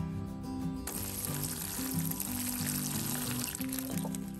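Water pouring from a plastic container onto the soil of a potted marigold, a steady splashing that starts about a second in and stops just before the end, over background music.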